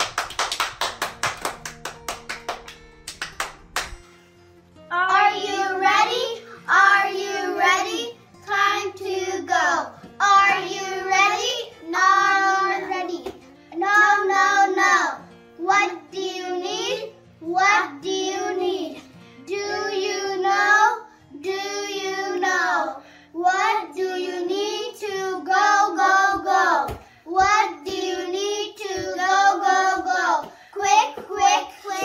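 Hands clapping in quick applause for the first three seconds or so. Then, from about five seconds in, children's voices singing, in sung phrases of one to two seconds with short breaks between them.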